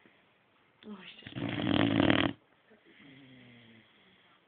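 Boxer dog snoring in its sleep: a short rising squeak about a second in, then one loud rattling snore about a second long, then a fainter, slightly falling pitched breath near the end.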